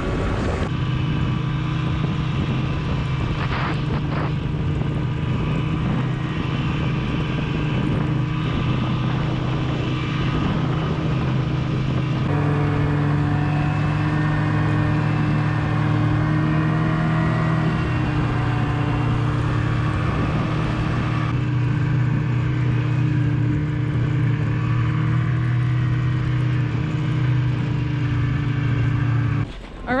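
Snowmobile engine running steadily at travelling speed, its note shifting slightly a few times and dropping away just before the end.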